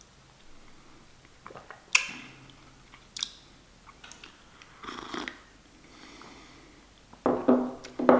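A person sipping coffee from a glass cup: a few short slurps and swallows spaced a second or more apart, then a brief voiced 'mm' near the end.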